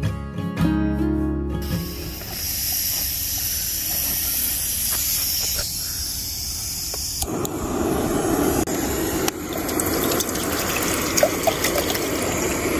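Acoustic guitar music for the first couple of seconds, then a steady hiss; from about seven seconds in, water pouring from a plastic bottle into a metal camping pot.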